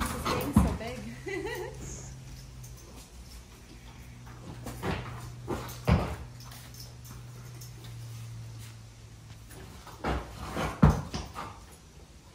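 A horse being bridled and harnessed in a concrete-floored barn: a few sharp knocks and clatters of tack, a cupboard door and hooves. A low steady hum runs under them for most of the first nine seconds.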